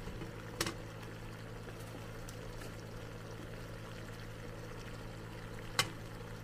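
Water boiling under a stainless steel steamer basket, a steady bubbling hiss over a low hum. Two sharp clicks come from wooden chopsticks knocking against the metal steamer, one about half a second in and one near the end.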